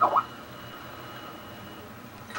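Quiet room tone after a short voice sound at the very start, with a faint steady high-pitched tone that stops shortly before the end.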